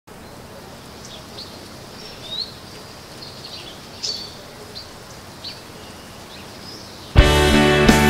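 Birds chirping: short, scattered calls, some rising or falling quickly, over a faint outdoor hiss. About seven seconds in, a rock band comes in suddenly and loudly with guitars and drums.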